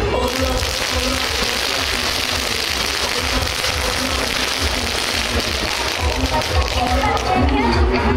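A long string of firecrackers crackling densely, starting suddenly and dying away after about seven seconds. Dance music with a steady bass beat plays underneath.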